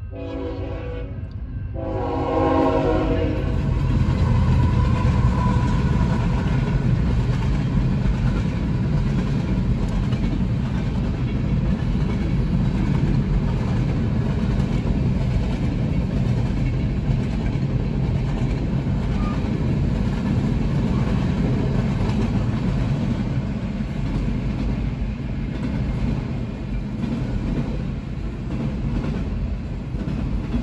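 Union Pacific freight train's horn sounding in a few blasts near the start. The lead locomotives, a GE ET44AH and a GE AC44CW, then come by with a loud rumble, followed by the steady roll and clatter of a long string of freight cars passing the crossing.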